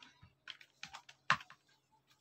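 Computer keyboard typing: a short run of irregular, fairly quiet keystrokes, the loudest about two-thirds of the way through.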